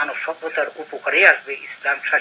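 A man speaking in a studio: continuous speech, no other sound.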